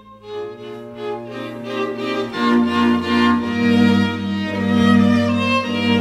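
Background music of bowed strings: a violin melody over held low notes. It starts a new phrase just after a brief dip and grows louder about two and a half seconds in.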